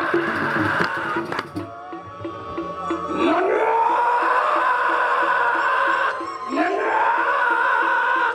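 Balinese gamelan gong ensemble playing a steady beat. Twice, a voice slides up from low into a long, held, high wailing cry, first about three seconds in and again near six seconds.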